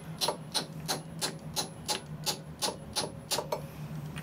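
Light, quick hammer taps, roughly three a second and slightly uneven, driving a Ford Model A's pressed-fiber camshaft timing gear onto the camshaft through a makeshift driver to seat it in mesh with the crankshaft gear. The tapping stops shortly before the end.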